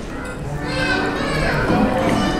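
Indistinct background voices with no clear words, including a higher, child-like voice, from about half a second in.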